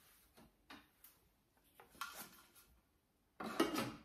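Light plastic-on-metal clicks and knocks as the lid is put onto a Thermomix TM6's steel mixing bowl, with a louder clatter of sharp clicks near the end as it seats.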